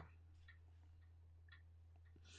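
Near silence: a clock ticking faintly, over a low steady hum.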